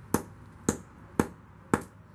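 Hammer repeatedly striking oyster shells on a concrete slab, crushing them into fragments: four sharp blows about half a second apart.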